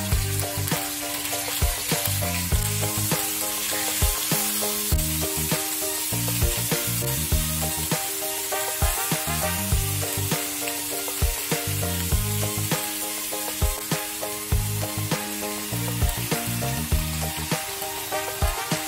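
Pork chops sizzling as they fry in oil in a grill pan, a steady hiss throughout. Background music with a melody and a regular beat plays over it.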